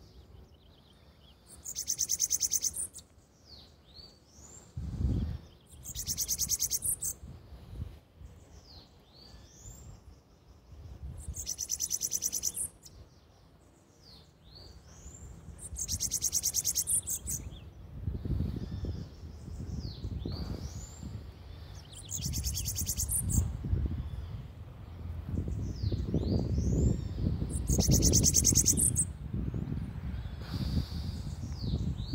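A caged bananaquit singing: six high, thin, rapid buzzing trill phrases, each about a second long, spaced four to six seconds apart, with soft thin chirps between. A low rumble rises in the second half.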